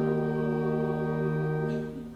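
Congregation singing a hymn with organ accompaniment, holding a long chord that breaks off briefly near the end before the next line starts.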